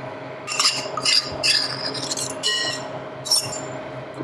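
A metal utensil scraping and clinking against a small bowl as beaten egg is poured and scraped out into a glass bowl of grated carrot. There are a handful of short, sharp clinks and scrapes spread through the few seconds.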